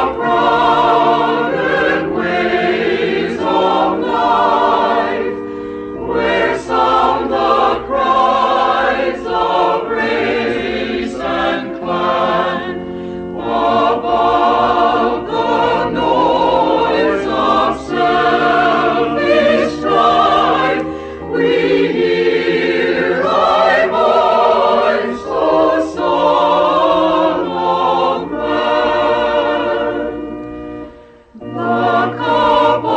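A choir singing a hymn in phrases, each a few seconds long with brief pauses between.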